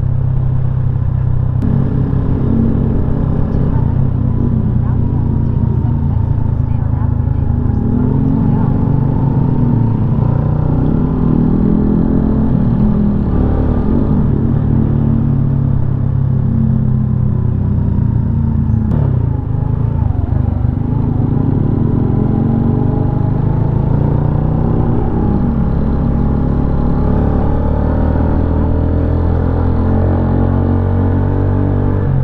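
Benelli VLX 150 single-cylinder motorcycle engine running while riding through town traffic, its pitch rising and falling every few seconds with the throttle.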